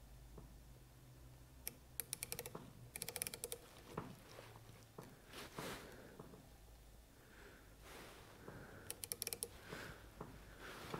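Three short runs of faint rapid clicking from the ratchet stop of a Matco micrometer closing on a telescoping gauge to read a cylinder-bore size. Soft handling noises from gloved hands come between the runs, over a faint low hum.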